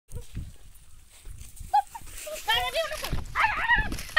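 Puppy whining and yelping in high, wavering cries that grow louder and more frequent over the last two seconds.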